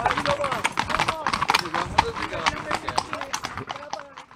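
Hooves of several horses clip-clopping on an asphalt lane, a quick irregular patter of strikes that fades toward the end. Faint voices of the riders sound underneath.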